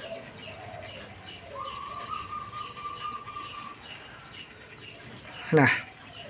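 Faint bird chirping in the background: a short, high chirp repeated two or three times a second, with a steady whistled note held for about two seconds in the middle.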